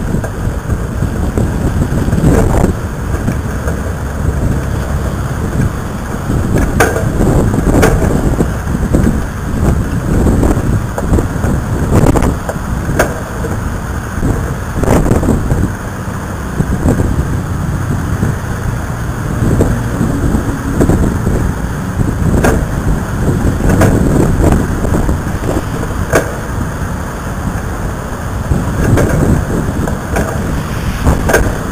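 Wind rumbling on the microphone over the steady noise of road traffic, with frequent sharp knocks and gusts as the camera is carried.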